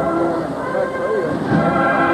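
Band music accompanying the Holy Week float: sustained chords held over a low beat that lands about a second and a half in.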